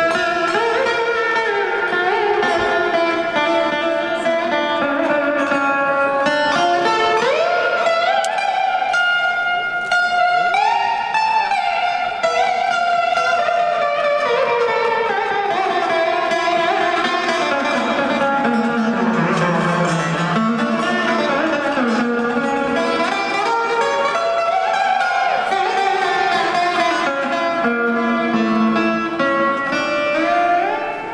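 Indian classical slide guitar: a lap-held archtop guitar with extra sympathetic strings, of the Mohan veena kind, played with a slide in an unbroken melody. Its notes glide up and down, sinking to a low register midway through and climbing again near the end.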